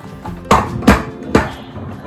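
Three sharp knocks about half a second apart as the plastic toy car and its packaging are put down and handled on a hard surface, with faint background music underneath.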